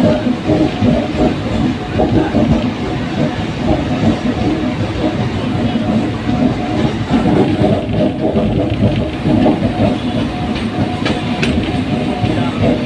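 Passenger train running at speed, heard from an open window of the moving coach: a continuous rumble and rattle of the wheels and carriage on the track.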